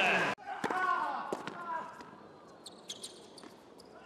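Tennis ball bounced several times on a hard court before a serve: a series of sharp, separate knocks in a quiet arena. Loud crowd noise cuts off suddenly just after the start.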